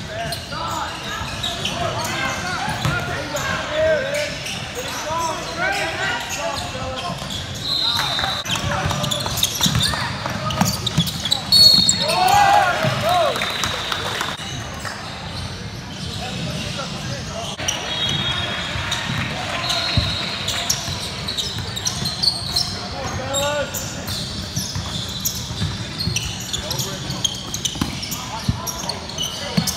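Basketball game in a large gym: the ball bouncing on the hardwood court, short high sneaker squeaks, and voices calling out, all echoing in the hall.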